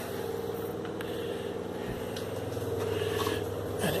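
A kitchen fan running with a steady hum, with a faint click about a second in.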